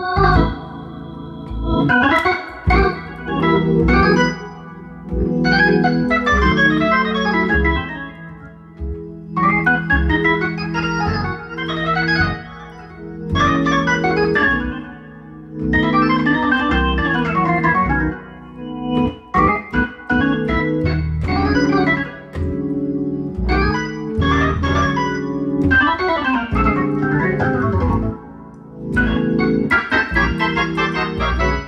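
A 1955 Hammond B-3 tonewheel organ played through its Leslie 122 speaker: neo-soul chords over a bass line, in phrases of a few seconds with short gaps between.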